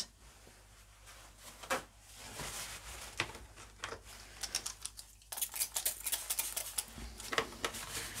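Quiet handling noises: a few scattered light clicks and rustles, then quick, dense rustling of paper towel from about five seconds in as it is gathered up for wiping the gel plate.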